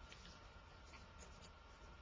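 Near silence: room tone with a low hum and a few faint ticks.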